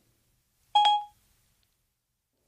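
A single short electronic chime from Siri on a phone, about a second in. It is the tone the voice assistant plays when it stops listening to a spoken question.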